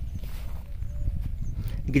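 Wind rumbling on an outdoor phone microphone, low and uneven, with a faint short tone about halfway through.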